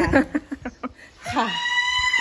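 Brief speech, then a woman's high-pitched, drawn-out call of "kha". It rises, holds one pitch for about half a second, then slides down.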